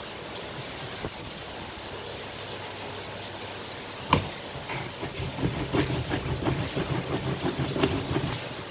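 Green plastic hand citrus juicer in use on limes: about four seconds in, one sharp plastic knock as the press lid comes down onto the reamer, then a quick, uneven run of creaking and rubbing as the lime is pressed and twisted. A steady hiss underlies it.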